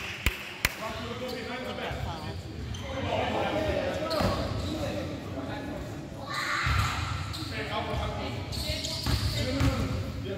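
Youth basketball game in a gym: a basketball bouncing on the court, with two sharp bounces in the first second, under a steady mix of players' and spectators' voices calling out in the large hall.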